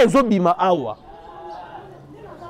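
A man's voice, falling in pitch and trailing off about a second in, followed by a quieter stretch of faint background sound.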